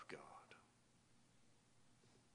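A man's voice quietly finishing a spoken word, then near silence: room tone.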